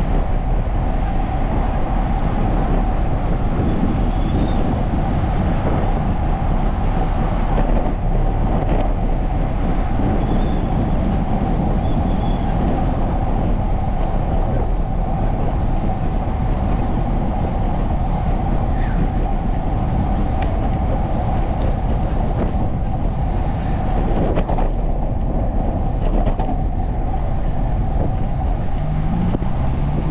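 Steady rushing noise of riding a bicycle beside a busy road: wind on the microphone mixed with the hum of passing car traffic. Near the end, a vehicle accelerates with a rising engine note.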